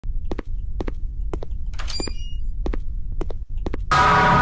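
A steady run of double thumps, about two pairs a second, over a low rumble, with a brief high scrape-like burst about halfway through. A loud sound cuts in just before the end.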